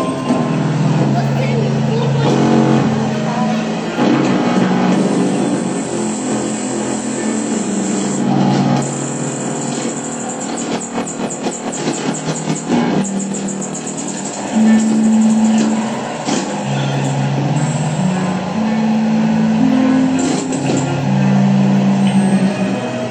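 Experimental live electronic music from a laptop ensemble: sustained low drone tones that step between pitches, with a rapid run of high clicks in the middle.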